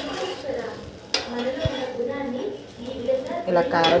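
Dosa sizzling on a hot tawa, with a sharp click about a second in.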